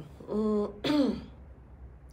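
A woman clearing her throat: two short sounds about half a second apart, the second opening with a rasp.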